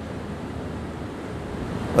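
A steady, even hiss of background noise with no speech in it.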